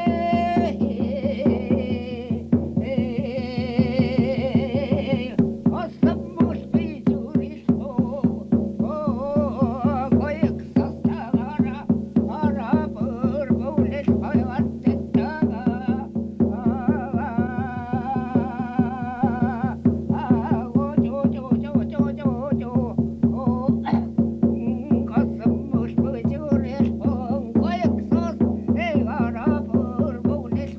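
A man singing a Khanty bear-feast song in separate phrases, with a wavering voice, over a plucked string instrument. The instrument is struck in a steady, even rhythm of about three strokes a second, and its low notes ring on underneath.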